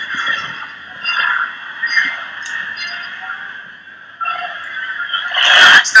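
Stadium crowd noise from a televised football match: a steady murmur heard through thin, narrow broadcast audio.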